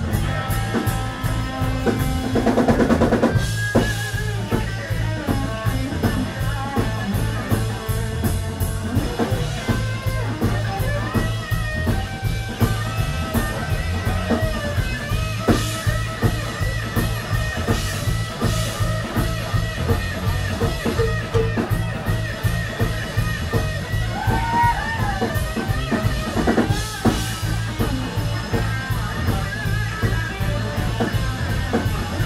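Live rock band: an electric guitar plays a lead line with bending notes over a steady drum-kit beat.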